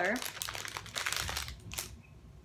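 Packaging crinkling as a pair of socks is handled and taken out, an irregular run of crackles.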